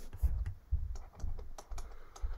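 Typing on a computer keyboard: a quick, irregular run of light key clicks, as figures are keyed in for a division.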